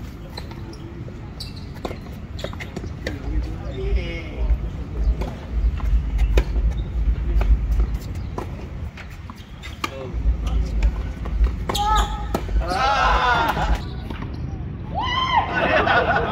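Tennis ball struck by rackets and bouncing on a hard court in a rally, a string of sharp pops, with wind rumbling on the microphone. Voices call out near the end.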